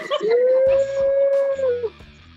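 A man's long wordless whoop, one held howling "woooo" that rises at the start and drops off near the end, let out while a flamethrower shoots fire.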